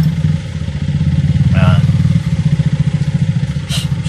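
Vehicle engine idling close by: a steady low rumble with fast, even pulses that swells in the middle and eases off again.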